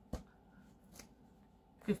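Faint handling noise as a folded saree and a paper number card are moved on a cloth-covered table: light rustling, with one soft knock just after the start.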